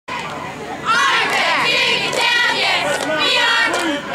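A group of cheerleaders chanting a cheer in unison, high voices shouting in short rhythmic phrases. The chant starts about a second in over a crowd murmur.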